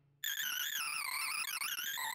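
Sorting-algorithm sonification: rapid synthesized beeps whose pitch follows the array values being compared and swapped as Batcher's bitonic sort runs, forming a warbling stack of electronic tones that wavers quickly up and down. It starts about a quarter second in, after a brief silence.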